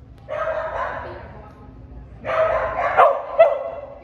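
A dog vocalizing twice. Each call lasts about a second, and the second call ends in two sharp, loud peaks.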